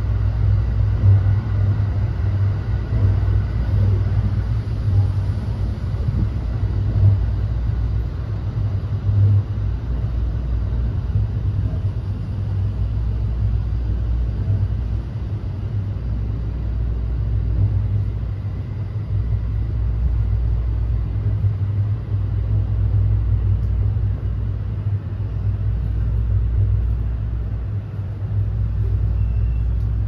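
Interior running noise of a JR West 321 series electric commuter train, heard inside an unpowered trailer car (SaHa 321-31): a steady low rumble of wheels on the rails with the car body's hum, at an even level throughout.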